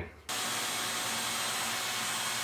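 Vacuum cleaner running steadily with a faint high whine, its hose nozzle sucking debris out of the spline groove of a metal screen-door frame. It starts abruptly a moment in.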